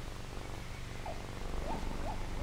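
Steady low hum and noise of an old film's optical soundtrack, with a few faint whistle-like tones that slide up and down in the second half.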